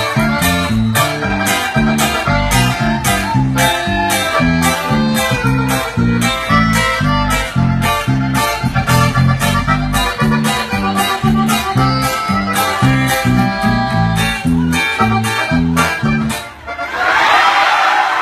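Live band music with a bouncing bass line alternating between notes over a steady drum beat and plucked strings. The song ends about a second and a half before the end, and the crowd breaks into cheering and whistling.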